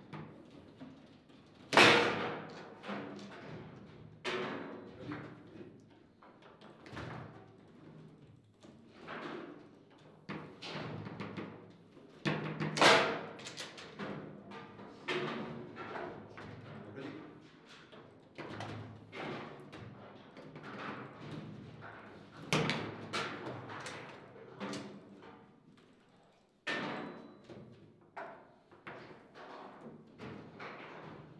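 Table football (foosball) play: the hard ball struck by the rods' plastic figures, an irregular run of sharp knocks and thuds. The loudest shots come about two seconds in and near the middle, with a hard hit after a short lull near the end.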